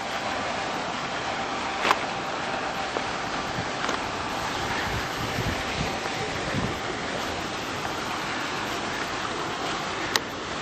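Steady rushing outdoor background noise with no clear single source, and one sharp click about two seconds in.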